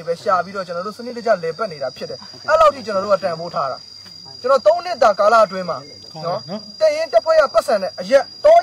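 A man talking in short phrases, with a steady high-pitched insect drone behind him.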